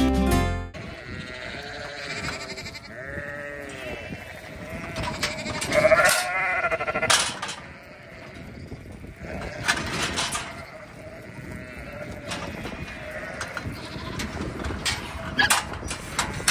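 Background music cuts off less than a second in. After that come ewes and lambs bleating in a pen, with the loudest calls about six seconds in, plus scattered sharp knocks.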